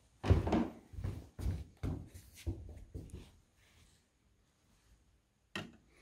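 A run of irregular knocks and bumps from handling lab equipment for the first few seconds, then a quiet spell and a single sharp clack near the end as the small glass spirit burner is set down on the balance's metal pan.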